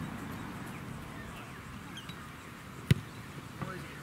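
One sharp thud about three seconds in, typical of a boot striking an Australian rules football in a kick, over a low steady outdoor background.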